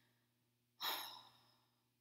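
A woman's audible sigh: one breathy exhale that starts sharply and trails off over about a second.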